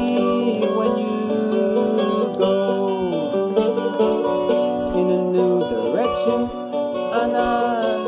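A folk song: a plucked acoustic string instrument strummed and picked under a male voice singing slow, gliding phrases of the chorus.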